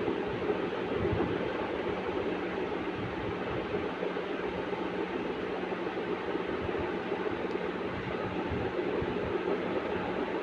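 A steady mechanical hum with one low, unchanging tone under an even rushing noise.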